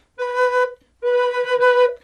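Brazilian rosewood Native American-style double flute in mid B playing its fundamental note: a short note, then, after a brief gap, a longer held note at the same steady pitch.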